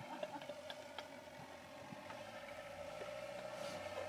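A van's engine held at high revs as it tries to pull away in deep snow, its drive wheels spinning: a faint, steady whine at one pitch that grows slightly louder toward the end.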